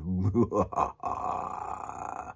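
A man's wordless vocal sound: a short growling grunt, then a breathy groan held for about a second.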